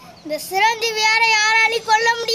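A boy's voice drawing out a long, steady high note from about half a second in, then starting a second one near the end.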